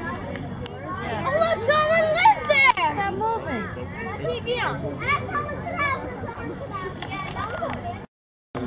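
Children's high-pitched voices, calling and squealing over the chatter of other visitors, loudest about two seconds in.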